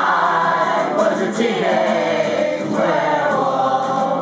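Several voices singing together over an acoustic guitar, holding long notes that slide down in pitch, about three in a row.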